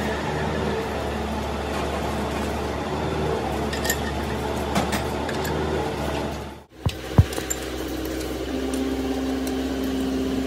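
Metal lathe running, a steady machine hum as its large four-jaw chuck turns a steel drive-shaft tube. About two-thirds through, the sound breaks off abruptly, then come two sharp metallic knocks and a lathe hum again.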